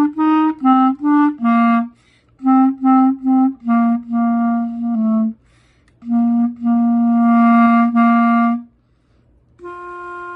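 Solo clarinet playing a melody in its low register: a run of short separate notes, then longer held notes, with brief pauses for breath about two, six and nine seconds in.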